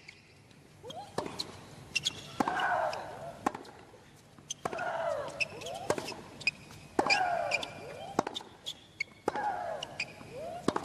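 Tennis rally on a hard court: sharp racket strikes and ball bounces about every second, with a falling shriek from one player on every other stroke, about every two seconds.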